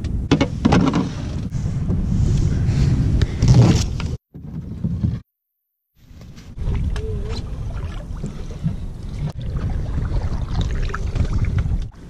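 Low, steady rumble of wind buffeting a camera microphone, which cuts out completely for about a second around five seconds in, then returns.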